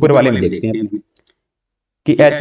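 A man speaking for about the first second, his voice then cutting off suddenly into silence.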